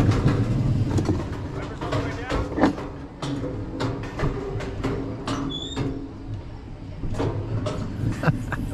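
Mountain coaster sled rolling on its metal rails with a low rumble that fades over the first few seconds as it slows into the station. Through the middle a run of short clicks and knocks comes from the wheels on the track.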